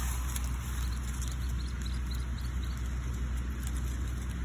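Steady low outdoor background rumble, with no distinct event standing out.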